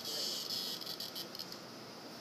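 A locust buzzing inside a Rottweiler's closed mouth: a high buzz that is strongest in the first second and then fades.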